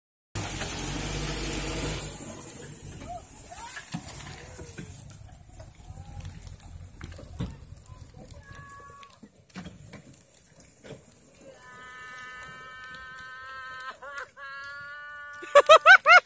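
Wind buffeting the microphone at first, then faint knocks and distant voices; in the last few seconds a person lets out one long held cry, breaking into loud laughter right at the end.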